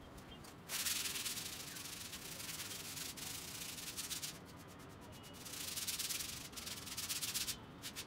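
Rapid rubbing strokes on a sheet of drawing paper as the dark shading of a portrait is worked by hand, in two long spells with a short break in the middle.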